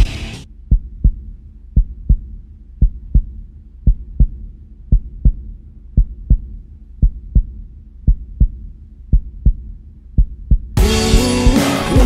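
A heartbeat sound effect: low double thumps, about one pair a second, over a faint low drone, after the song's music cuts out. The band's music comes back in loudly near the end.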